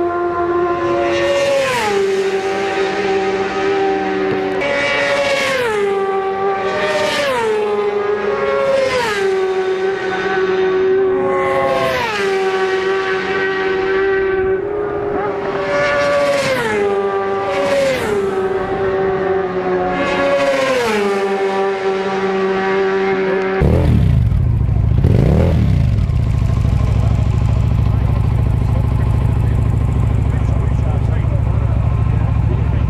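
Racing motorcycles pass at speed one after another, about ten in all. Each engine note drops in pitch as it goes by and then holds lower as the bike draws away. About 24 s in, this gives way to a loud low rumble of wind on the microphone, with a short engine rev rising and falling.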